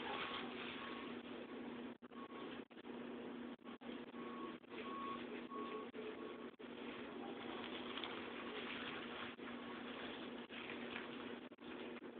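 Steady low hum and hiss of background room noise, with a few groups of short faint beeps repeating about every half second, early and again near the middle.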